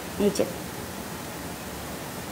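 A woman's voice gives one brief, short utterance about a quarter of a second in, followed by a steady background hiss.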